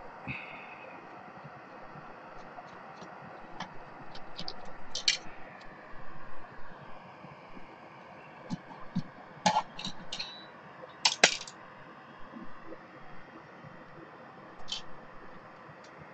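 Scattered light clicks, taps and scrapes of hands handling parts and wiring inside a disk drive's case, over a faint steady background hiss. The sharpest knocks come about nine to eleven seconds in.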